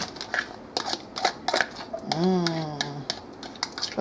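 A utensil knocking and scraping mashed banana out of a plastic bowl into a stainless steel mixing bowl: a quick, uneven run of sharp clicks and clinks. A short stretch of voice comes about two seconds in.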